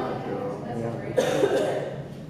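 Spectators talking near the microphone, with a sharp cough a little over a second in that is the loudest sound.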